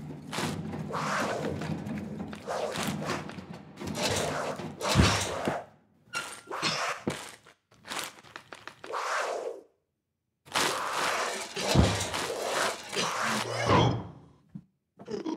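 Added experimental sound-design soundtrack: irregular bursts of noise over low droning tones, with a heavy thud about five seconds in and another near the end, broken by brief silences.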